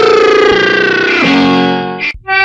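Closing instrumental notes of an old Tamil film song: a held note that steps down to a lower one about a second in and fades away, then is cut off abruptly.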